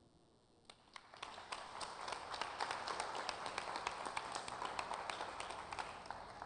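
Audience applauding, starting about a second in, swelling, and tapering off near the end.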